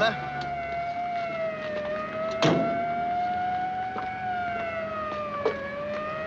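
Police car siren wailing in a slow, shallow rise and fall. A sharp knock comes about two and a half seconds in.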